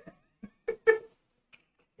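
A person laughing: three short, breathy bursts close together in the first second, then quiet.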